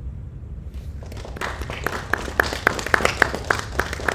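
Hands clapping in applause, starting about one and a half seconds in: steady claps about four a second with fainter clapping among them, over a low steady hum.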